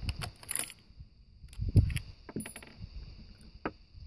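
Light metallic clicks and knocks of gear being handled at a rifle shooting position, with one louder low thump just under two seconds in.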